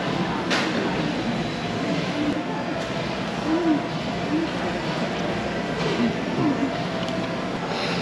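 Restaurant dining-room din: a steady background hum with the faint, indistinct voices of other diners, and a brief click about half a second in.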